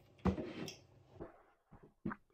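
Faint handling sounds at a table: one knock about a quarter second in, then a few softer short taps as hands move between the water and the food.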